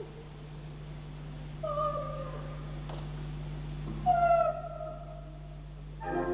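Operatic soprano voice singing two short held notes about two seconds apart, each sliding slightly down in pitch, with a low steady hum and little or no orchestra beneath them.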